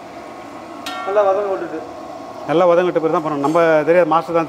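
A metal ladle knocks once against an aluminium cooking pot about a second in, giving a short metallic ring, under a man's voice that grows louder in the second half.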